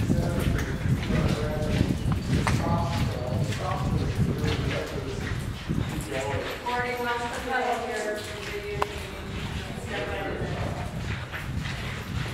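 Footsteps knocking on the hard lava tube floor, with indistinct voices of other people talking in the tunnel.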